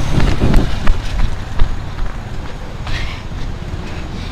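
Wind rumbling on the microphone, with a vehicle engine running in the background and a few sharp clicks.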